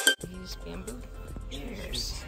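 Background music cuts off abruptly at the very start, leaving quiet outdoor ambience: faint voices talking in the background over a low rumble.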